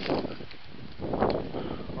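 Footsteps crunching in dry fallen leaves: two short rustling crunches, one at the start and one about a second in.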